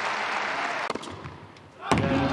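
Tennis crowd applauding, cut off about a second in by two sharp knocks and a short quieter stretch; near the end a sharp knock comes and the applause picks up again.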